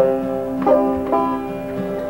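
Banjo and acoustic guitar playing a folk tune together, with picked banjo notes ringing out over the guitar, in the instrumental introduction to a song.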